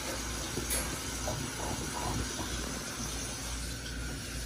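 A French bulldog eating from its bowl of kibble mixed with wet food, with a few soft chewing and smacking sounds in the first half, over a steady hiss.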